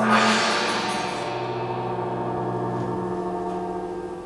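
A single struck musical sound at the start, left to ring and fading slowly away, with a bright shimmer that dies out after about a second while the lower notes hang on.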